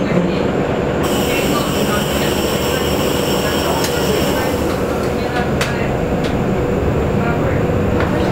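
Cabin noise inside a KAMAZ-6282 electric bus on the move: a steady road rumble with the whine of its electric traction drive, and a higher whine joining about a second in.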